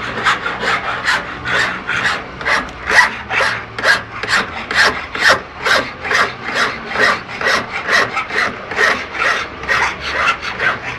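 A steel hand file rasping back and forth across a small workpiece held against a wooden jeweller's bench pin, in a steady rhythm of about two strokes a second.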